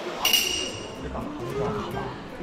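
A single bright ding about a quarter second in, ringing briefly and fading, followed by people talking.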